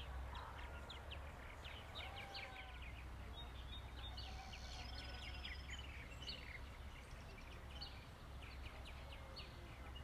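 Birds chirping and singing faintly: many quick high chirps throughout, with a few short whistled notes, over a low steady rumble.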